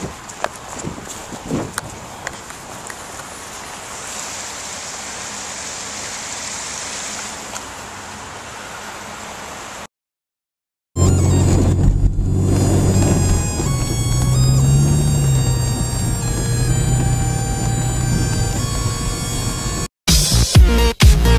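Steady rain noise with some rubbing and knocking of the camera against clothing; about ten seconds in, the sound cuts out for a second, then loud music with a heavy bass line comes in.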